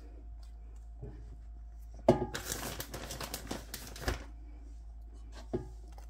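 Hands sprinkling and pressing shredded cheese onto a pizza base in a parchment-lined air fryer basket. A crinkly rustle lasts about two seconds midway, with a few small clicks before and after.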